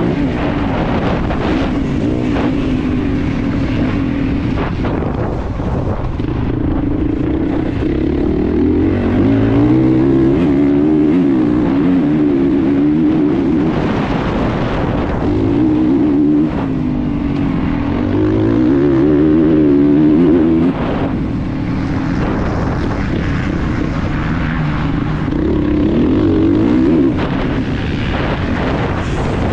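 Off-road motorcycle engine at race pace, heard from the rider's helmet camera, revving up and down as it climbs through the gears. The engine note drops suddenly about two-thirds of the way through and again near the end as the throttle is rolled off.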